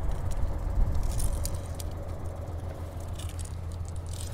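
A metal rod pushed and worked down into loose tilled soil: a few short scrapes and clicks of metal against earth and clods. Under it runs a steady low rumble, most likely the hitched tractor's engine idling.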